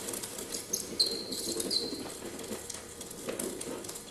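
Experimental electroacoustic performance sound: scattered crackles and clicks with a few short, high chirping tones, some gliding down, over a faint low hum.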